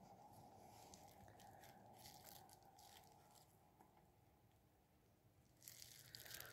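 Near silence: room tone, with a few faint clicks of the plastic model chassis being handled, mostly near the end.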